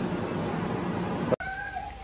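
A cat meows once, briefly, near the end, right after a sudden cut in the sound; before the cut there is only steady background noise.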